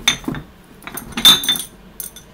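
Empty glass Ramune bottles clinking and knocking against each other as they are handled in a cardboard box, with short ringing clinks at the start and a louder cluster of clinks just past a second in.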